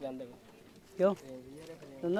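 Goat bleating: one short, wavering bleat about a second in, with fainter bleats or voices around it.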